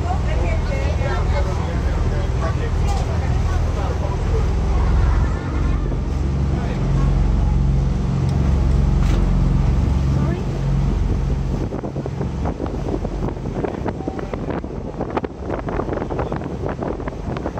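Boat engine running with a steady low hum while the boat moves across open water. Voices chatter in the first few seconds, and in the last few seconds wind buffets the microphone.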